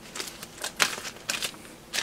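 Plastic and foil component bags crinkling as they are handled, in a run of short, irregular rustles.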